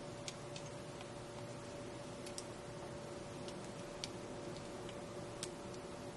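Faint, irregular light clicks from handling a curling iron wrapped with wig hair, over a steady low hum.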